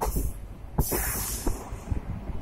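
Express train running at speed through a station, heard from inside the coach at an open barred window: a steady low rumble with uneven clacks of wheels over rail joints. A loud rush of hiss comes about a second in.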